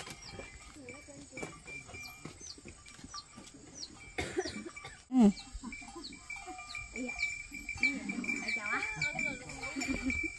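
Goat bleating several times. The loudest call comes about five seconds in and a wavering call near the end, over a steady high insect buzz with repeated short chirps.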